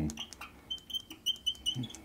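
Marker pen writing on a glass lightboard, with a few light ticks and then a quick run of short, high squeaks as the tip moves over the glass.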